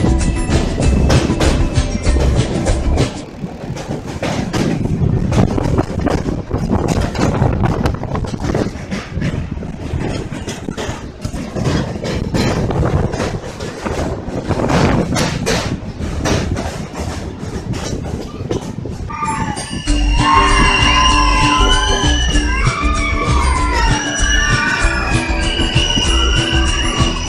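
Background music for the first few seconds, then the express train's own running noise, a loud rumble and rapid clatter of wheels on the rails, for about sixteen seconds. Music with a gliding melody comes back near the end.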